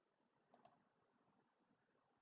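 Near silence: faint room tone, with two faint clicks close together about half a second in.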